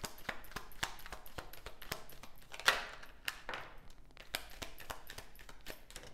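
A deck of tarot cards being shuffled by hand: a quick run of light card flicks and clicks, with one louder burst about two and a half seconds in.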